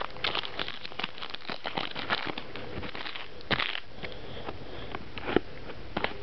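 Foil trading-card pack wrapper crinkling and crackling as it is torn open and handled, with irregular crackles throughout and a sharper one about three and a half seconds in.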